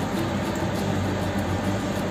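A fan running with a steady low hum and an even hiss.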